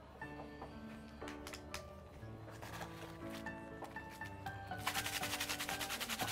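Soft background music with sustained notes. About five seconds in, a fast scraping, rubbing noise starts and grows louder.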